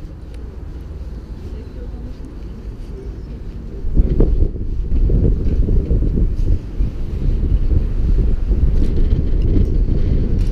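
Wind buffeting the camera's microphone, a low gusty rumble that turns much louder about four seconds in, with a brief knock as it does.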